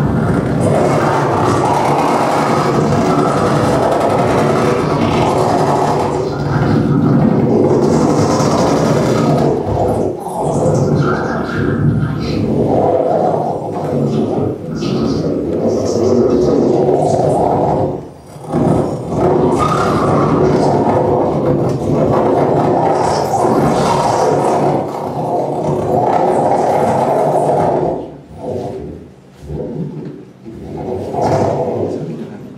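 Live experimental electronic music from a laptop ensemble playing SuperCollider with gestural controllers: a dense, noisy, grinding texture with sweeping glides. It cuts out briefly about 18 seconds in and thins out again near the end.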